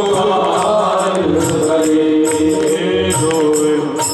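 Live devotional bhajan: men's voices singing to harmonium accompaniment, with steady rhythmic percussion ticking through it.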